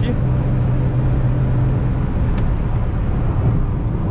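Ford Ka's 1.0 three-cylinder engine running at high revs in fourth gear at highway speed, heard inside the cabin with road and wind noise. Its steady low engine note is strongest for the first couple of seconds and eases a little after. A single short click comes about two seconds in.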